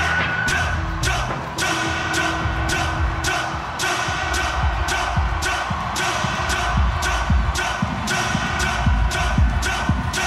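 Electronic dance music from a live DJ set over an arena sound system, with a steady heavy beat about two times a second.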